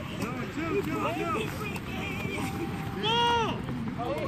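Several people shouting and calling out across an open playing field at once, with one loud, drawn-out shout about three seconds in.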